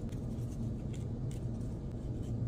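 A steady low hum with a few faint scratches of a folded paper towel being rubbed inside the blade slot of a Wahl Detailer trimmer.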